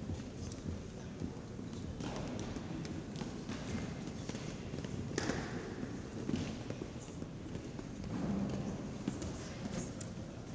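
Hard-soled shoes of a column of cadets stepping down stone stairs: a loose run of small clicking footfalls.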